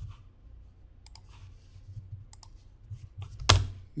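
Computer mouse clicking: a few faint clicks about a second in and just past two seconds, then one louder, sharper click near the end, over a low steady hum.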